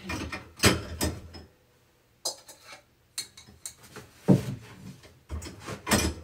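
A handful of separate knocks and clatters, about a second apart, of bowls and other items being shifted on a shelf as a bowl is taken down.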